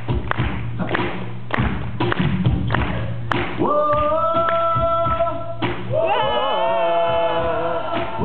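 A steady beat of thumps, about two a second, then voices singing long held notes from about halfway through. A couple of seconds later one voice slides and wavers over the held notes.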